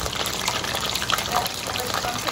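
Chicken wings deep-frying in hot oil in a pot: a steady, dense sizzle and crackle of bubbling oil with small scattered pops.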